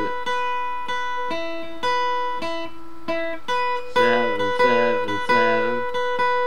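Acoustic guitar picking a single-note melody line, one note at a time, then three louder, fuller strokes about four seconds in.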